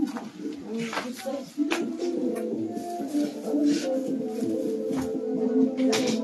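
Several voices singing together in long, steady held notes, which start about a second and a half in. A few sharp clicks come just before the singing.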